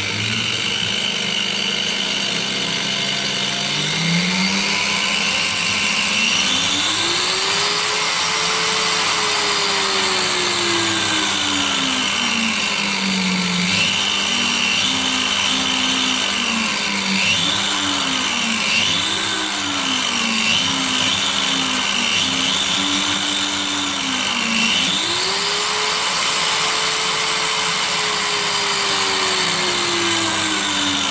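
Electric angle grinder motor running through a knob-type speed controller, its pitch rising and falling as the knob is turned. It climbs slowly to a high speed and drops, then rises and falls in several short quick swings, and near the end rises again and slowly winds down.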